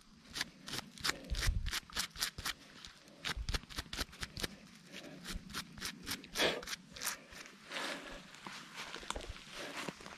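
Gloved hands handling dry leaf litter and soil around a dig hole: rapid, irregular rustling, scraping and small clicks, busiest in the first few seconds.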